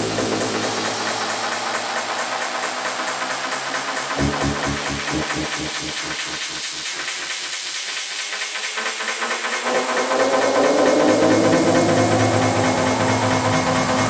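Trance/electronic dance music mixed live by a DJ, in a breakdown: the bass drops out over a hissing synth wash, a regular pulsing beat comes in about four seconds in, and near ten seconds the bass returns under a rising synth sweep that builds toward the drop.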